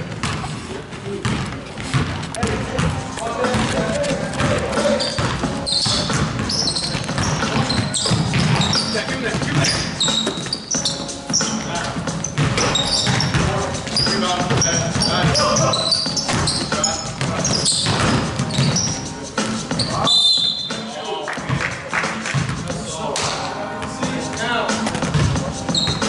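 Basketball bouncing on a hardwood gym court during play, with voices and music in the background.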